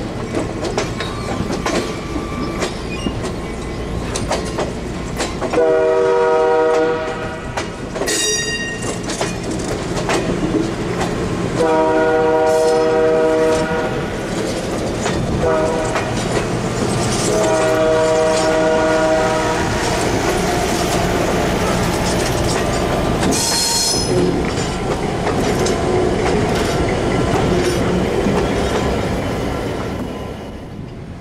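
Diesel locomotive air horn blowing the grade-crossing signal, long, long, short, long, over the steady rumble and clickety-clack of passenger cars rolling past on jointed track. There are two brief high wheel squeals.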